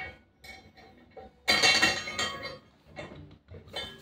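Metal clinking and clanking from a grip-training loading pin, its chain and steel block handle being handled and set up, with a few light clinks, then a louder ringing clatter about a second and a half in.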